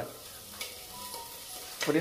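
Faint, steady sizzling of food frying in a pot on a gas stove.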